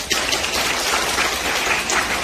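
Audience applauding, a dense, steady clapping.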